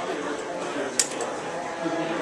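Indistinct voices talking in the background, with a single sharp click about halfway through.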